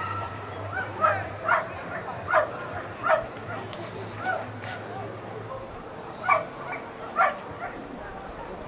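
A dog giving short, high-pitched yelping barks: a quick run of four in the first few seconds, then two more later on, with softer yelps between them.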